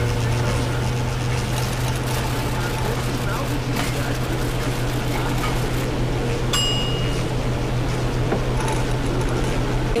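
Many electric fans and portable air conditioners running together: a steady whir with a low hum. About six and a half seconds in, ice clinks once in a glass.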